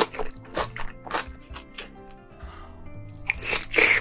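Crunchy chewing and biting of spicy seafood, a run of sharp crisp bursts that eases off in the middle and comes back loudest near the end, over background music.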